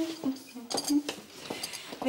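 Porcelain coffee cup rattling and clinking on its saucer as it is carried and set down on a desk, a few light clinks, with a brief murmur of voice.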